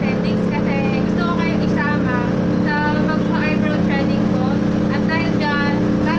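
A loud, steady low mechanical hum runs throughout, with a woman talking over it.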